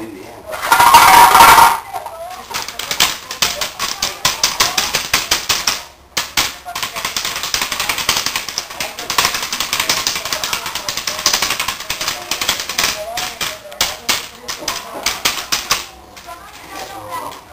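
A Belgian Shepherd puppy's claws clicking and scrabbling rapidly on a hard tile floor as it lunges and tugs at a rag toy, several sharp clicks a second. A brief loud burst of sound comes about half a second in.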